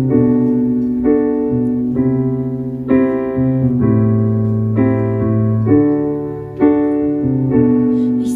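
Piano chords played on a stage keyboard as a slow ballad intro: one sustained chord struck about once a second, each fading before the next.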